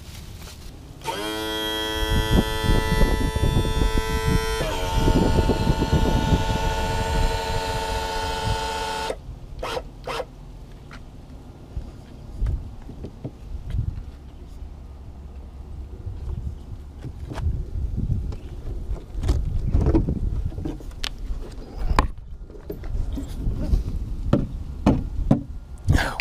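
A held musical chord for about eight seconds that changes once partway through. Then scattered clicks and knocks from the cowling of a Mercury 200 hp two-stroke outboard being unlatched and lifted off, over a low rumble.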